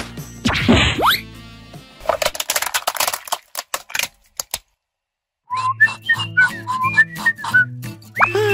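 A rising whistle-like swoop, then a dense run of cracking clicks as a hollow plastic toy is crushed and shattered under a car tyre. After a brief silence, a cartoonish whistled tune plays over a steady bass line.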